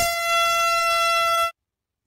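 Air horn giving one loud, steady blast of about a second and a half, then cutting off suddenly.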